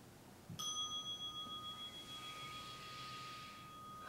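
A meditation bell struck once about half a second in, ringing on with a clear, slowly fading tone. It marks the end of the 30-minute sitting.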